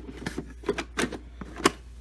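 A quick, irregular run of light clicks and taps from a hand handling hard plastic, the sharpest click near the end.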